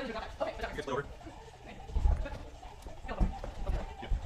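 Several people talking quietly, with a few dull low thumps about two seconds in and again a little after three seconds.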